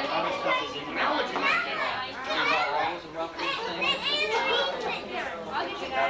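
Many voices at once, children's and adults', talking and calling out over one another in a lively family room, with no pause.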